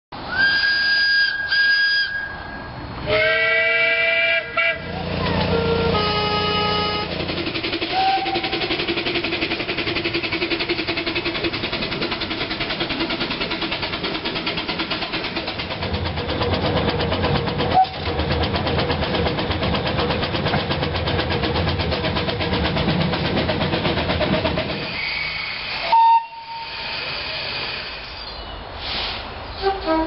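A series of steam locomotive whistles: first a single-note whistle, then a chime whistle of several notes sounding together, then another many-note blast. These are followed by a long stretch of a steam locomotive running, a steady hiss with a fast even beat, and a short whistle toot near the end.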